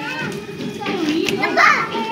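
Young children's voices chattering and calling out as they play, with a louder high-pitched call about one and a half seconds in.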